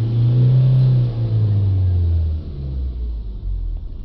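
Ford Transit diesel engine held at full throttle, revs slowly climbing and then falling back about two seconds in. The engine is extremely restricted on power, with a blocked diesel particulate filter.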